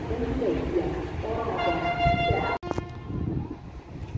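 Train rumbling along beside the platform, then a locomotive horn sounds one steady blast of about a second. The horn is cut off abruptly by an edit, after which only wind on the microphone remains.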